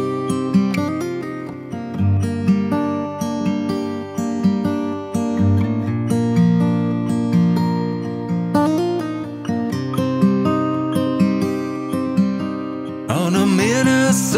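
Music: an acoustic guitar plays a picked instrumental intro in a steady rhythm. Near the end the music suddenly turns louder and fuller as a wavering melodic part comes in.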